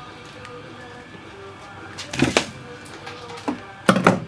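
Hand wire stripper clamping and pulling the insulation off a red stranded copper wire: a pair of sharp clicks about two seconds in, a lighter click, then a louder snap near the end.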